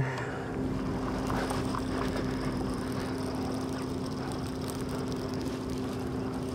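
A steady low motor hum holding one pitch, over light background noise, with a couple of faint ticks.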